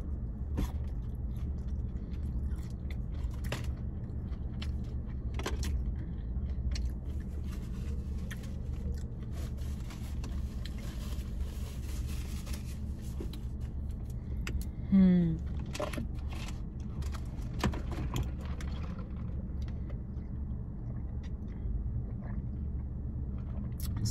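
Chewing and small mouth clicks from someone eating a fried mac and cheese bite, over a steady low hum inside a car. A paper bag rustles for a few seconds near the middle, and a short falling 'mm' is voiced a little past halfway.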